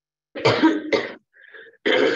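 A person coughing: two harsh coughs in quick succession about half a second in, then another near the end.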